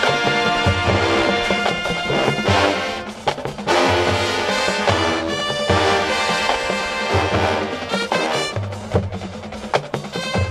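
Marching band playing a brass-heavy tune: sousaphones, horns and drums, over a punchy bass line of short repeated low notes. The band thins out briefly about three seconds in, then comes back in full.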